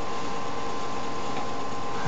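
Steady background hiss with a faint steady hum, unchanging and with no distinct events: the recording's noise floor in a pause between speech.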